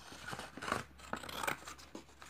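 Scissors cutting through a sheet of thin paper: a quick series of snips, several in a row.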